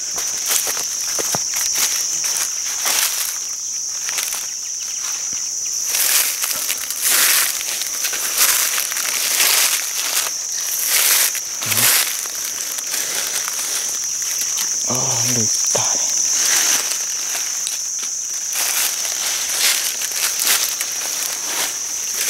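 Insects droning steadily at a high pitch, with dry fallen leaves crunching and crackling underfoot at irregular intervals.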